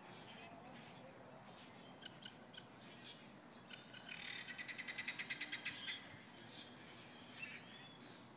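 A bird calling: a rapid rattling trill of about ten notes a second, lasting about two seconds and starting about four seconds in, with faint scattered chirps around it.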